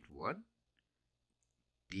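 A man's voice trails off at the start, then a pause of near silence with a couple of faint ticks. Speech starts again just before the end.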